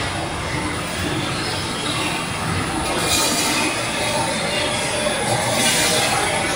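Industrial rotary kiln running: a steady, loud mechanical din with no let-up, brightening into a hiss-like high end about three seconds in and again near the end.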